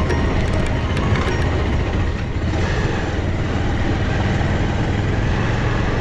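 Motorcycle riding slowly over a rough gravel and dirt road: a steady low engine drone under a rush of wind and road noise, with a few light clicks in the first second and a half.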